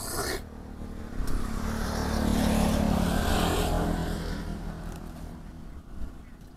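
A motor vehicle passing by, its engine and road noise swelling from about a second in and fading away over the next few seconds.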